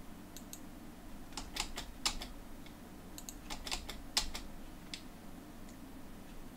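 Computer keyboard keys being pressed: an irregular run of a dozen or so short clicks, starting about half a second in and stopping about five seconds in.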